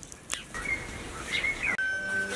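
A bird calling with whistled notes that slide up and down, after a single click. Near the end the sound cuts off abruptly and music begins.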